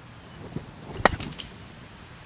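A putter striking a golf ball off a concrete cart path: one sharp crack about a second in, followed by a few fainter ticks.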